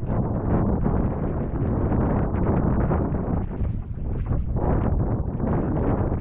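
Wind gusting across an action camera's microphone on open ocean, a dense steady rumble that rises and falls with the gusts.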